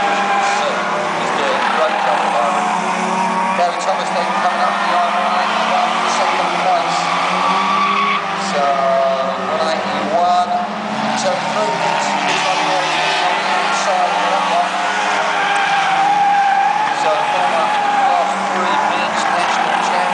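Several Euro Rod race car engines running hard together as the pack laps the oval, their pitch rising and falling as they come off and on the throttle through the bends.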